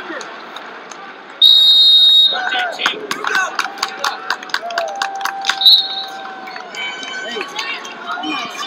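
A referee's whistle blown once for about a second, stopping the wrestling. It is followed by men's shouts and a run of sharp claps.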